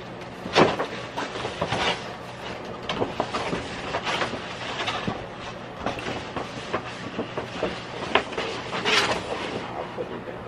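Large sheets of paper being handled and shuffled: irregular rustling and crackling, with a sharp crackle about half a second in and a longer burst of rustling near the end.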